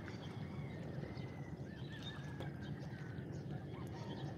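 Small waves lapping and washing over a rocky, pebbly shore in a steady low wash with a few small clicks. Birds call faintly over it with thin, wavering whistles.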